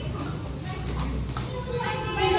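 Faint voices and children's chatter in a stairwell over a steady low hum, with two sharp clicks about a second in.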